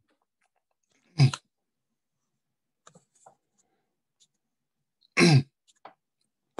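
A man coughs twice: two short, sharp coughs about four seconds apart.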